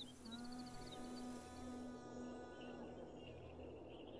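Quiet background film music: one long held low note with overtones. Over it come a quick run of faint high chirps in the first second, then a faint steady high buzz.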